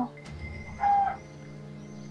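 Birds calling in the background, with one short, louder bird call about a second in, over a steady low music drone.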